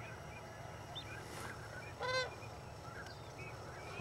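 A flock of sandhill cranes calling in flight, many faint distant calls overlapping throughout, with one louder, nearer call about halfway through.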